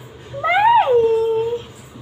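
A small child's high voice: one drawn-out call about half a second in that rises sharply in pitch, then falls and holds for a moment before fading, as if answering a prompt to say bye.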